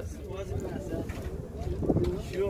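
Faint background voices of people talking over a low, steady rumble, with a brief louder voice near the end.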